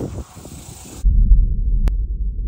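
A loud, low rumbling whoosh sound effect that cuts in abruptly about a second in, with a single sharp click near the end: the transition sound under a globe-zoom travel animation.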